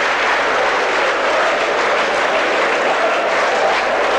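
Theatre audience applauding steadily.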